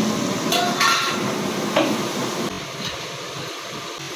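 A steel slotted ladle clanks against a large stainless-steel cooking pot three times in the first two seconds, each strike ringing briefly. A steady hiss runs underneath.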